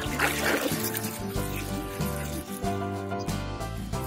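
Background music with held tones, over faint splashing of water as a plastic toy is swished in a tub.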